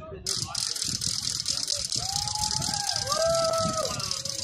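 A loud, rapid rattling starts a moment in and runs for about four seconds. Over its second half a voice calls out in drawn-out tones that rise and fall.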